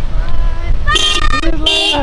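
Two short toots of a car horn, about a second in and again near the end, over a steady low rumble of wind on the microphone.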